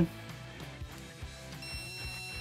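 A steady high-pitched beep from a non-contact voltage detector's buzzer starts near the end and holds. It is the tester's audible signal that it has picked up the alternating field of a live cable. Quiet background music plays underneath.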